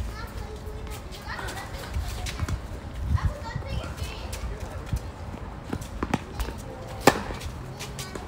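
Tennis balls struck by rackets and bouncing on a hard court during a doubles rally: several sharp pops at irregular intervals, the loudest near the end, an overhead smash.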